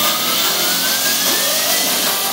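Hardstyle dance-track intro: a loud whooshing noise sweep with one thin tone rising slowly in pitch, building up before the beat comes in.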